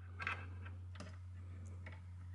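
A few faint clicks and light rustling of cables being handled and plugged into the back of a router, as the power lead goes in.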